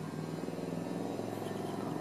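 A steady low mechanical hum with several pitched tones, like an engine, slowly growing louder.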